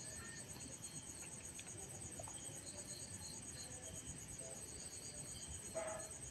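Faint, steady chirping of crickets, a high trill in a fast even pulse, with a few soft clicks of a spoon stirring the pan.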